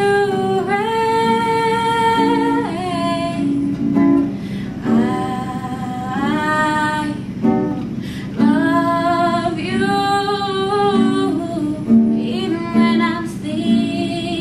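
A woman singing slow phrases of long held notes with vibrato, accompanying herself on a plucked acoustic guitar.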